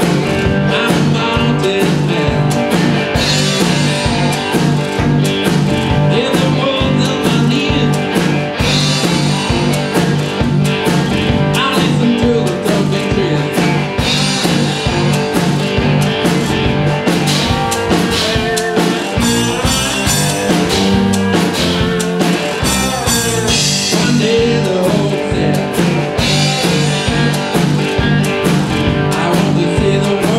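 Live blues-rock band playing: electric box-bodied stick guitars, homemade with oak necks, over a drum kit keeping a steady beat.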